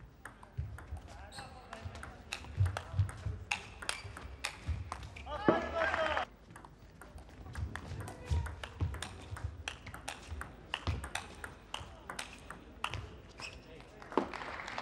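Table tennis rally: the ball clicking sharply off the rackets and the table in quick succession, with low thuds of the players' feet on the court floor. A brief pitched squeal or cry comes about five and a half seconds in.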